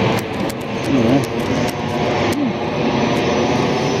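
Jet airliner passing overhead: a steady rushing engine roar.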